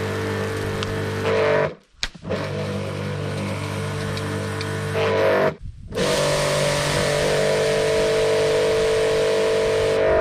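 Electric pressure washer's motor and pump running with the hiss of the water jet. The machine cuts out briefly twice and starts again, then stops near the end.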